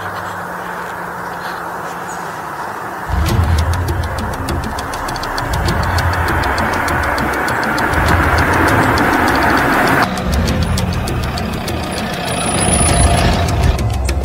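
Background music with the sound of a car engine approaching along the road, swelling from about three seconds in.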